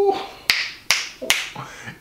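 Three sharp finger snaps in quick succession, a little under half a second apart.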